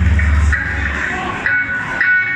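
Rock band playing live in a large hall: a low held note dies away about a second in, followed by ringing electric guitar notes.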